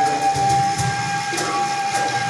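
Live music from an oud, electric bass and drum trio: one long high note held steady over low bass notes, with faint light percussion ticks.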